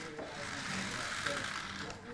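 Small electric motor of a toy remote-control car running with a steady whirring hiss, its wheels likely spinning freely while the car lies flipped over. The sound drops off near the end.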